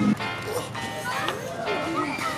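Background music with steady held notes, with faint voice-like sounds underneath.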